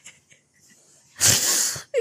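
A person's short, hissing burst of breath with no voice in it, a wheezy laugh, about a second in after a near-quiet pause.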